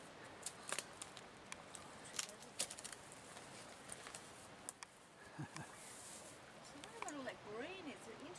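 Faint scattered clicks and snaps of twigs and undergrowth as someone moves through scrub carrying loppers, most of them in the first few seconds. Near the end comes a faint, wavering voice.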